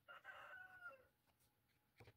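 Faint rooster crow, one call about a second long that drops in pitch at the end.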